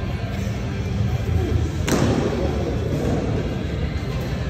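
A single sharp crack about two seconds in as a pitched baseball strikes at home plate, ringing through a large hall, over background music and a low rumble.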